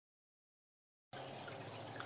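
Silence, then a little over halfway in a steady faint hiss with a low hum begins: the room tone of a home camera recording.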